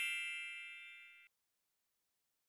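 A bright, bell-like metallic ding ringing out and fading away, dying out a little over a second in.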